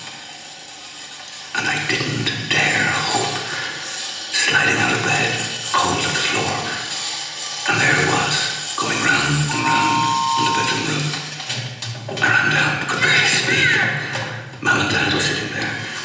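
Recorded sound effect of a toy train set running, from a radio advertisement played over a PA loudspeaker in a large room, with music under it. About ten seconds in, a steady whistle-like tone sounds once for just over a second.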